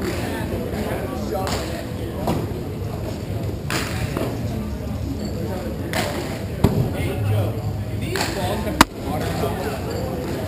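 Hockey game on a plastic sport-court rink: scattered knocks of sticks and puck over indistinct players' voices, with one sharp crack near the end, the loudest sound.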